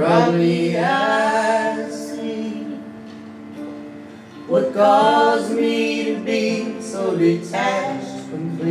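Live acoustic guitar with singing: three sung phrases, one at the start, one about four and a half seconds in and a short one near the end, over sustained accompaniment.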